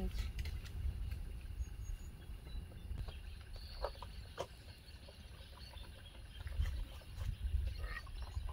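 A metal spoon stirring in a clay cooking pot, with a couple of short clinks against the pot about four seconds in, over a low steady rumble.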